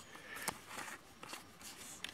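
Faint handling noise of a plastic powder bottle being picked up and turned in the hand, with a light click about half a second in and a few softer ticks.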